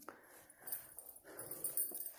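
Soft, intermittent rustling of a hand and pen moving over a paper workbook page, with a light click at the start.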